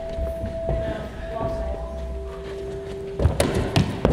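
A steady held tone, joined midway by a lower one, then a quick cluster of thuds near the end as a person's hands and feet strike the gym wall and floor during a parkour wall spin.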